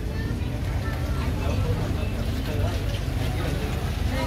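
Busy market crowd: faint, indistinct voices of shoppers and sellers over a steady low rumble.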